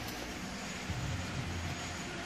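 Steady low hum with an even hiss: background room noise, with no distinct event.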